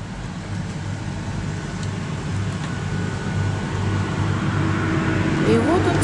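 Road traffic noise: a steady rushing hum that grows gradually louder, as of a vehicle approaching.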